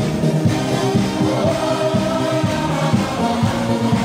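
Large crowd of men singing a melody together, low voices carrying on without a break.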